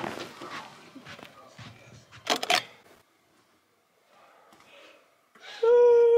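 Slippered footsteps scuffing along a floor, with clothing and handling rustle and a louder scuff about two and a half seconds in. After a short quiet gap, music with a long held note begins near the end.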